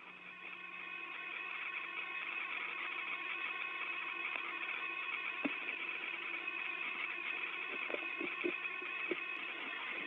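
Steady drone of several held tones over a low hum, heard on the open space-to-ground radio channel, with a few faint clicks in the second half.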